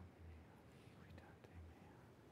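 Near silence: faint low room hum with faint whispering.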